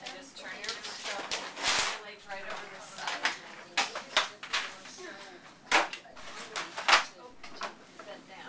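A run of sharp clicks and knocks with bouts of rustling. The two loudest knocks come a little before six seconds and near seven seconds in, over faint voices.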